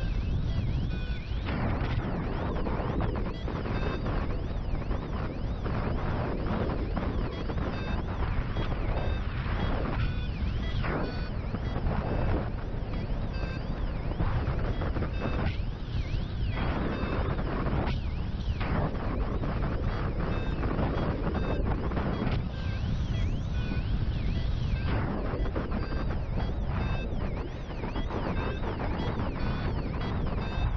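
Steady wind rushing over the camera microphone of a paraglider in flight, a dense low rumble of moving air with small gusty swells.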